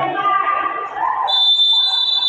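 Referee's whistle blown once, a steady shrill blast of about a second starting just past the middle, signalling the kick-off.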